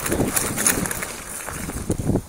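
Mountain bike rolling over a dirt trail: tyre noise with irregular rattling clicks and knocks from the bike, busier in the first second.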